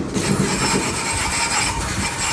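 Water spraying from a garden-hose wand onto an outdoor air-conditioner condenser, a steady hiss that starts abruptly just after the beginning.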